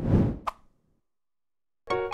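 A short sound effect for the logo animation: a low swell with a sharp click about half a second in, fading quickly. Near the end the opening theme music starts.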